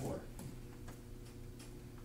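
Faint irregular ticks and taps, several a second, over a steady low hum.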